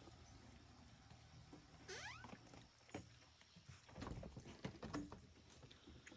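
Raccoons feeding on a wooden deck: quiet, scattered clicks and taps of their feet and eating, thickest about four to five seconds in. A short rising chirp sounds about two seconds in.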